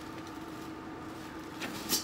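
Quiet room tone with a steady faint hum, and two brief rustles late on as fabric throw pillows are handled.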